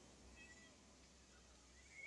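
Near silence, with a few faint, brief high chirps about half a second in and again near the end.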